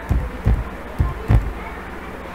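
Computer keyboard keys struck one at a time: four dull, thudding knocks about two per second as a word is typed.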